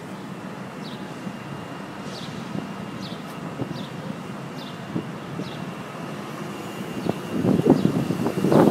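Outdoor city ambience: a steady rush of noise with short, high chirps repeating about once a second, getting louder near the end.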